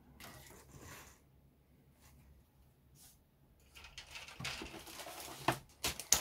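Faint handling of plastic model-kit parts: a sprue being set down and a bagged sprue picked up, with soft plastic rustling from about four seconds in and a couple of sharp clicks near the end.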